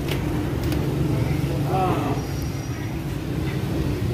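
Steady low traffic rumble from a nearby street, with a few indistinct voices around the middle.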